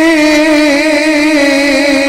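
A man singing one long held note with a slow wavering vibrato into a microphone, the pitch dipping slightly lower near the end.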